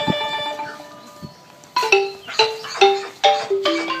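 Traditional Khmer ensemble music: a drum stroke, then the ringing tones fade for about a second before a run of struck xylophone-like notes, about two or three a second, stepping down in pitch near the end.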